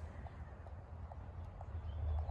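Low, uneven rumble of wind on the microphone outdoors, with a few faint soft ticks.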